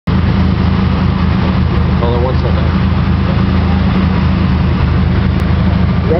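Loud, steady low bass rumble from car-audio subwoofers, with a brief voice about two seconds in.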